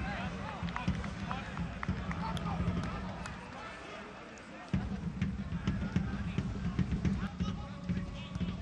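Pitch-side football ambience with few spectators: distant players' shouts and a few sharp knocks over a steady low hum. The hum fades about four seconds in and cuts back in abruptly a moment later.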